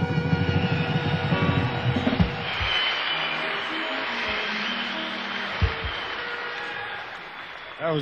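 A live band plays the last bars of a song, which ends about two seconds in, followed by audience applause that slowly fades.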